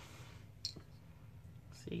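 Small resin embellishment pieces handled in the palm, giving a couple of faint clicks a little over half a second in, over quiet room tone.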